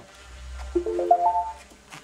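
Ninebot Z10 electric unicycle's power-on chime: a short run of four or five tones stepping up in pitch, over a low hum.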